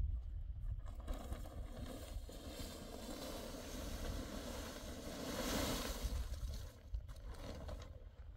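Plastic sheeting on a hut roof rustling as it is lifted and pulled back. The rustle swells to its loudest about five to six seconds in and dies away near the end, over a steady low rumble.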